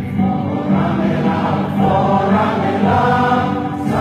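A group of voices singing together in slow, held notes.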